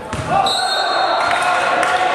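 Live sound of an indoor volleyball rally in a sports hall: voices of players and spectators echoing, with a few sharp knocks of the ball being hit.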